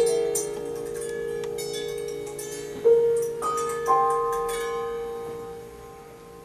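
Sparse instrumental playing on piano and harp: single notes struck and left to ring, one at the start and a few more about three to four seconds in, each fading slowly.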